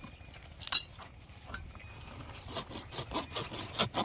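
Farrier's rasp working a horse's hoof: one sharp, loud stroke about a second in, then short regular strokes about three a second in the second half.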